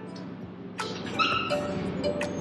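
A brief high-pitched cry with a clear pitch, about a second in, after a light click.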